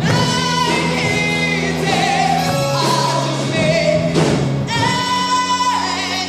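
A female vocalist sings with a live band of keyboard, electric guitar and strings. She holds long notes with vibrato.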